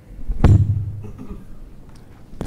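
Microphone handling noise: a single loud thump about half a second in, with a low boom that fades over about a second.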